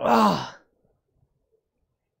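A man's tired sigh: one breathy exhale falling in pitch, about half a second long.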